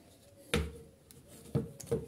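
Knocks and clicks of a plastic recoil starter housing from a Kawasaki engine being handled and set down on a workbench, with a screwdriver wedged in its spring-loaded pulley. There is a sharp knock with a dull thud about half a second in, a faint click, then two more sharp knocks near the end.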